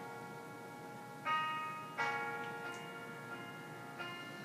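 Instrumental backing track of the song playing quietly between sung lines: two struck, bell-like chords, about a second and two seconds in, each ringing on and fading.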